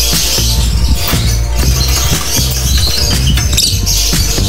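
Electronic dance music with heavy bass and a steady beat.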